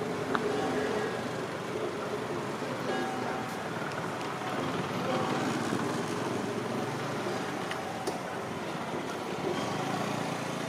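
Outdoor street ambience: a steady wash of traffic noise with faint distant voices mixed in.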